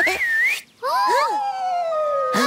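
Cartoon whistle sound effects: a short wavering whistle, a brief pause, then several sliding whistle tones, one falling slowly in pitch.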